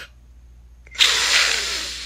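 A woman's long breathy exhale through the hand held over her mouth and nose, in a fit of nervous laughing-crying. It starts sharply about a second in and fades away.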